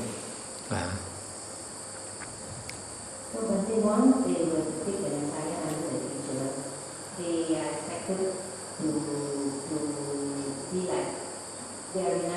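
A person talking faintly off the microphone from about three seconds in, over steady insect trilling, likely crickets, in the background.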